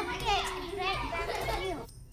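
Children's voices talking and calling out, cut off abruptly just before the end.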